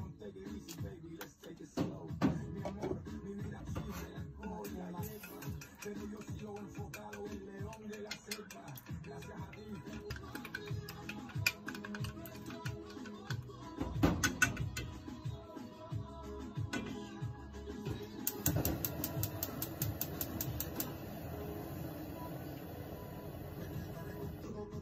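Background music with a fast, irregular clicking of wooden chopsticks beating eggs against a small metal bowl, becoming a quick, even run of clicks near the end.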